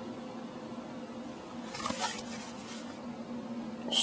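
Soft rustling of fabric and a hand-held phone moving against bedding and skin, over a steady low electrical hum, with a brief sharp click near the end.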